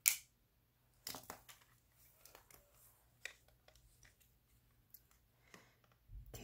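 Faint handling sounds of rock-foiling work: a sharp click right at the start, then scattered soft crinkles and light taps as nail foil, tools and the rock are handled and a small UV nail lamp is set over the rock.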